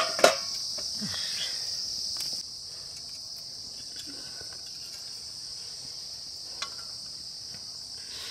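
A steady high-pitched chorus of insects chirring, a little louder for the first two seconds. A couple of sharp knocks come right at the start and a faint tick later on.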